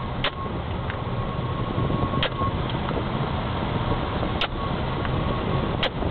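Engine and road noise inside a moving police patrol car, with about four sharp clicks spread through it.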